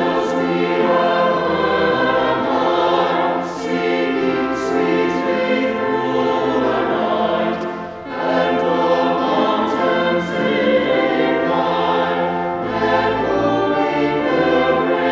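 A choir singing a sustained, flowing piece with accompaniment, with short breaks between phrases.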